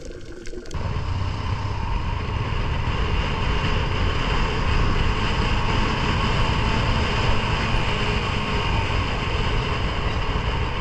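Muffled underwater water sound for under a second, then a cut to a small motorbike running steadily along a road, with wind rushing past, heard from on the bike.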